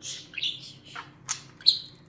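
Budgerigar chattering: a quick string of high chirps and sharp clicks, the loudest click just before the end.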